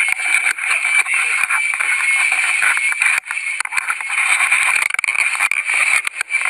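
Water rushing and splashing into a ditched airplane's cabin, with a dense clatter of knocks and jostling as people scramble, over a steady high tone. The sound is thin and tinny, with no low end.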